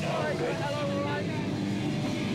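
People talking in a crowd over a steady, buzzing drone from a live band's amplified instruments.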